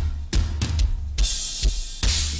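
Live rock drum kit from a concert recording, playing a simple, tight groove of bass drum and snare hits. A cymbal wash comes in about a second in. The beat has a little funkiness to it.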